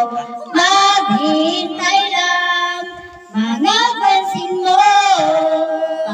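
A woman singing solo in two long phrases, holding notes with vibrato, with a short breath gap about three seconds in.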